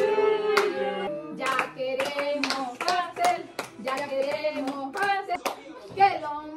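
A group singing a birthday song while clapping along in rhythm, sharp hand claps about twice a second over the singing voices.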